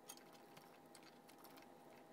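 Near silence, with a few faint light clicks and taps from tools and wire being handled on a wooden workbench, the clearest just after the start, over a faint steady thin whine.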